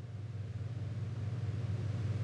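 Low, steady organ tone with a hiss, slowly swelling louder as the pipe organ's sound fades in, just ahead of the full hymn introduction.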